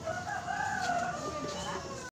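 A single long drawn-out call, its pitch wavering slightly, lasting about a second and a half.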